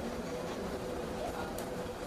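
Indistinct low chatter of a group gathered in a room, over a steady hum, with a single short click about one and a half seconds in.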